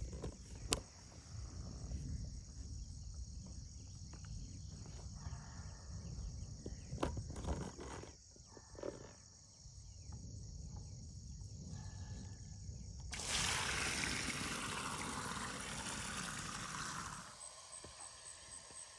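Steady chorus of crickets chirping, with low rustling and a few sharp knocks as hands work at the base of a plastic stock tank. About two-thirds of the way in a loud, even rushing starts suddenly and runs for about four seconds before cutting off: water gushing out of the tank's opened drain.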